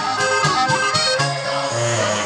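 Band music with the accordion to the fore and a clarinet, playing a lively tune over a moving bass line.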